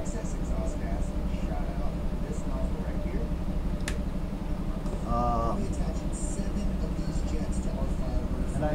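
Steady low hum, with a single sharp click of a felt-tip marker's cap about four seconds in and a brief murmured sound from a man about five seconds in.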